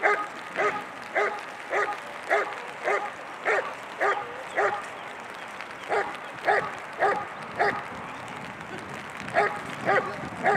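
German shepherd barking steadily at a standing helper, the hold-and-bark of IGP protection work: about two barks a second, in runs broken by two short pauses, one just after the middle and one near the end.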